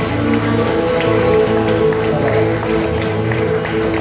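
Live Cretan folk music, with no singing: a bowed Cretan lyra holds long notes over strummed laouto, guitar and bass guitar.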